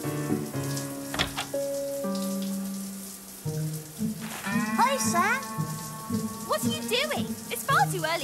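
A shower running, a steady hiss of spraying water, under a cartoon music score. The score holds notes at first, and sliding, voice-like notes come in about halfway through.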